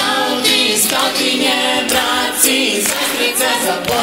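A group of voices singing a song together in chorus, with little or no instrumental backing.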